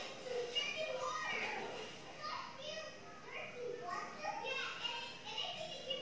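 Young girls' voices playing from a television: high-pitched children's talk and exclamations heard through the TV speaker across the room.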